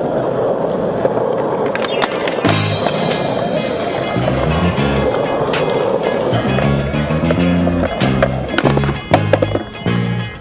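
Skateboard wheels rolling on smooth concrete, a steady rumble. About two and a half seconds in, music with a stepping bassline comes in over the rolling.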